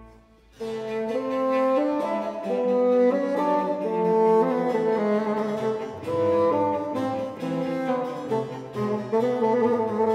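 Solo bassoon and string orchestra playing a fast 18th-century concerto movement in a minor key. After a brief pause the music starts again about half a second in and goes on as a lively melodic line over the strings.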